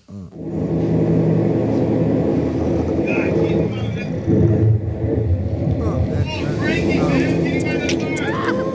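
A steady engine rumble with a constant pitch that starts just after the beginning, with indistinct voices over it.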